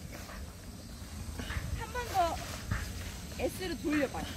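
Nylon fabric of a pop-up tent rustling as it is twisted and pressed down to fold, with quiet talk in between.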